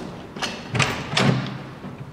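A few dull thumps, about two a second, from the dormitory room's door being handled.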